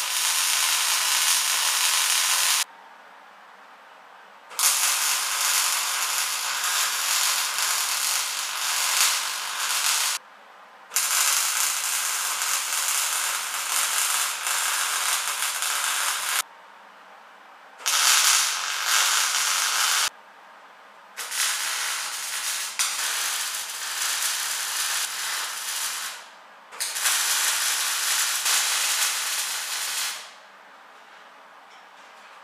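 MIG welder arc crackling on a steel frame in six welding runs of two to six seconds each, with short pauses between them.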